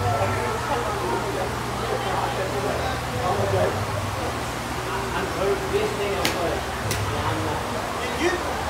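Golf club striking balls: two sharp clicks about six and seven seconds in. They sit over a steady low hum and the murmur of voices at the driving range.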